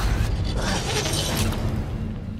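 Film sound effect of a mechanical cable hoist grinding and creaking as it hauls a man off his feet by the legs. The dense grinding eases a little near the end.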